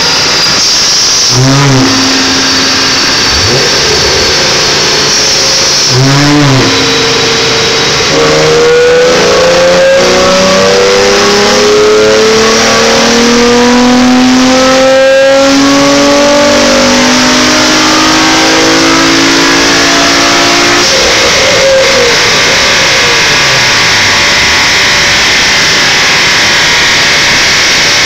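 Infiniti G35's 3.5-litre V6 being run on a chassis dyno: a few short throttle blips, then a full-throttle dyno pull with the engine note climbing steadily for about thirteen seconds. The throttle then shuts abruptly and the revs fall back toward idle, with another rise starting near the end.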